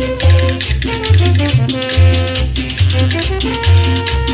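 Tropical Latin dance-band music led by a bombardino (euphonium) with brass, over a bass line pulsing about once a second and a steady rattle of maracas. A long held horn note comes in near the end.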